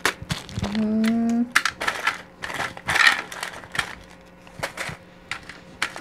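Small beads clicking against each other and a little plastic zip-lock bag crinkling as the bag is handled and searched through. A short hummed 'mm' about a second in.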